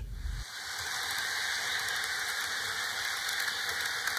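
Model steam train running along the track: a steady, even hiss with no clear rhythm.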